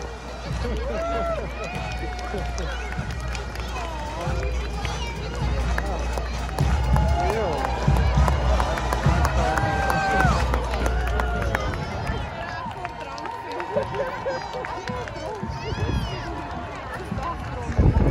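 Roadside crowd chatter and voices as a uniformed marching contingent walks past, with the shuffle of many footsteps. Wind rumbles on the microphone for most of the stretch and dies away about two-thirds of the way through.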